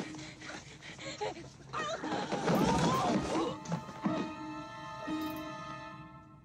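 Film soundtrack: a loud, chaotic burst of overlapping shouting and screaming voices, followed by a long, steady, held high-pitched cry, over music.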